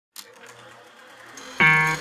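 Gibson Memphis 2015 ES-335 semi-hollow electric guitar played through an amplifier on its neck pickup: faint amp hiss and hum, then a loud picked note rings out about a second and a half in.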